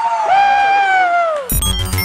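A long, loud cry held on one drawn-out note whose pitch slowly falls, breaking off about a second and a half in. It is cut off by electronic music with a steady beat and heavy bass.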